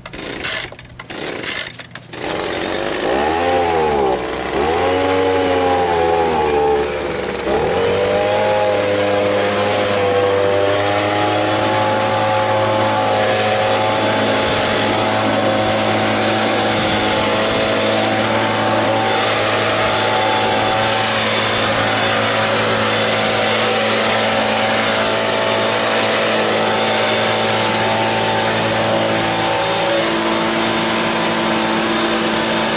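Small two-stroke leaf blower pull-started with a few tugs on the cord, catching about two seconds in. It revs up and down several times, then runs steadily at high speed.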